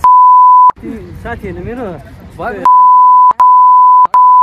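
Loud, steady, single-pitch censor bleep tone dubbed over speech. It sounds for under a second at the start, then after about two seconds of talking it returns and runs on with a brief break.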